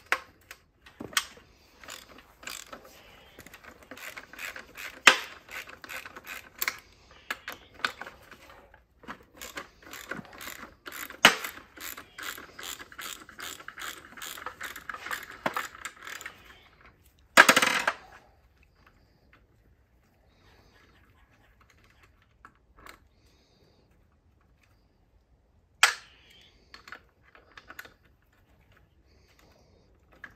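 Ratchet wrench with a 13 mm socket clicking in quick runs as the two bottom bolts holding an oil cooler to its housing are backed out. A louder clatter comes about seventeen seconds in, then it goes mostly quiet apart from one sharp knock.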